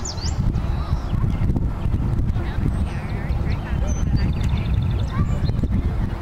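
Wind rumbling on the microphone is the loudest sound. Over it come faint, high, short peeping calls from Canada goose goslings, and a brief trill from another bird about four seconds in.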